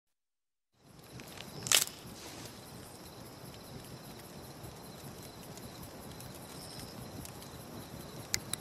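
Silence for the first second, then faint outdoor night ambience with a few faint, steady high tones. One sharp snap comes just under two seconds in and is the loudest sound.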